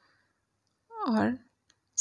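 Near silence with one short spoken word about a second in, and a single faint click near the end.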